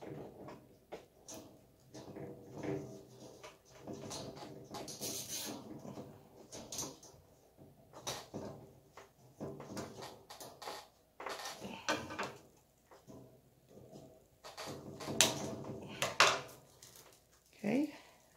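Nylon zip tie being threaded around the steel wires of a wire-grid storage panel and pulled tight, with scattered small clicks and rattles of plastic against wire and a cluster of sharper clicks near the end.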